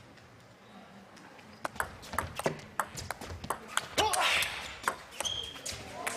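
Table tennis rally: the celluloid ball clicking sharply off rubber-covered bats and the table in a fast exchange, starting about a second and a half in after a quiet pause. A couple of short squeaks come near the end.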